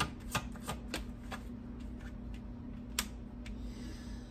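A deck of tarot cards being shuffled and handled: a quick run of light card flicks and taps in the first second or so, then one sharp snap of a card about three seconds in, over a faint steady hum.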